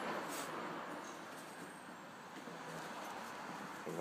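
Glue being spread across an MDF panel with a plastic filler spreader: a soft, steady scraping.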